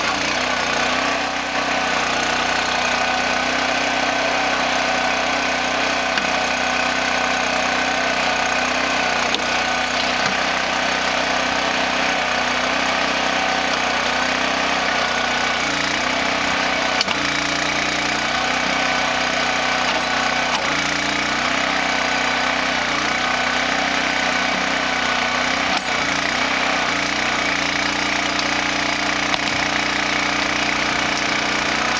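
Towable backhoe's small engine running steadily, its pitch stepping down and back up now and then as the hydraulics take load while the bucket is worked, with a few faint knocks.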